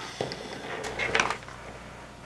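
Light clicks and knocks of small plastic RC parts and a hand tool being picked up and handled on a workbench, a few separate taps with a small cluster about a second in.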